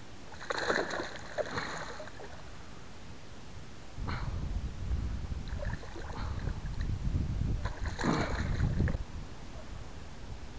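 Hooked largemouth bass splashing and thrashing at the surface beside a kayak, in two bursts: one about half a second in and another near the end. Between them there is a low rumble.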